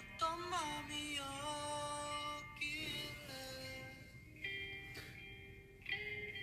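A recorded song playing: a singer holds long, sliding notes over light instrumental backing.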